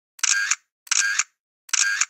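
A short sound effect repeated three times, about 0.7 s apart, each burst opening and closing with a click.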